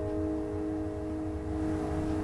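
Acoustic guitar chord left ringing and slowly fading at the close of the song, over a steady low rumble.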